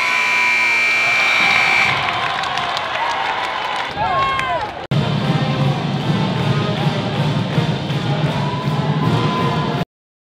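Gymnasium scoreboard horn sounding one steady tone for about two seconds over crowd noise as the final shot goes up, marking the end of the game, with sneakers squeaking on the hardwood. After a cut, music with a steady beat runs until the sound stops abruptly near the end.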